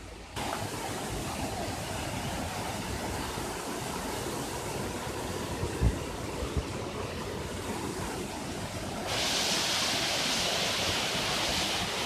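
Waterfall rushing steadily, becoming louder and hissier about nine seconds in. A couple of dull thumps near the middle.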